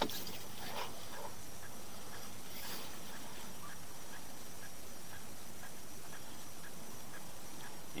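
Steady, even hiss of background noise, with a faint short sound about a second in and another near three seconds.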